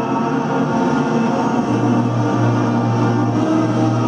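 A national anthem playing over a stadium sound system, heard from a video played back through room speakers: held orchestral chords, with a strong low bass note coming in just under two seconds in.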